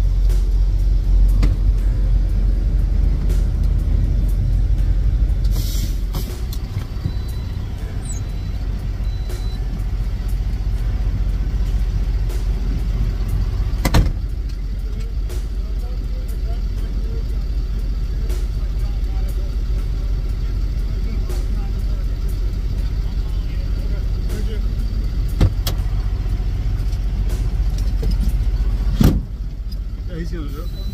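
Steady low engine rumble heard inside an idling semi-truck's cab, with a short hiss about six seconds in and a few sharp knocks later on.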